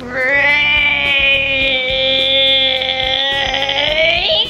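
A young child's voice holding one long, high-pitched sung or squealed note for nearly four seconds, wavering and rising slightly at the end.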